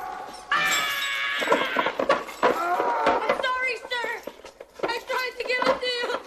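A man's wordless yells and cries: a long held cry near the start, then excited cries that waver up and down in pitch, broken by short pauses.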